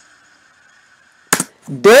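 Faint steady hiss through a pause, broken about a second and a quarter in by one sudden sharp burst, then a man loudly exclaiming 'Dead' with his voice rising in pitch near the end.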